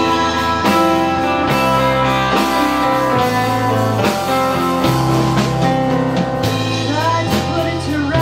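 Live band music: electric guitar playing over keyboard chords, bass notes and drums, with the chords changing about every second.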